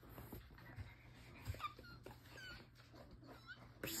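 Frenchton puppy whimpering faintly: a few short, high-pitched whines about a second apart in the second half.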